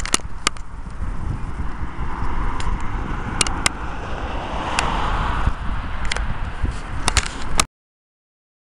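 Wind buffeting the microphone of a handheld camera on a moving bicycle, with sharp clicks and rattles from the bike and camera handling. A rushing noise swells about five seconds in, and the sound cuts off suddenly near the end.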